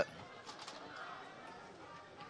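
Faint open-air ambience of a football ground picked up by the pitchside broadcast microphones, a low steady hiss with no clear event.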